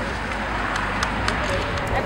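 Outdoor crowd ambience at a shovel-digging ceremony: a steady noise of wind and traffic with faint voices, and a run of sharp clicks in the second half as ceremonial shovels dig into a dirt pile.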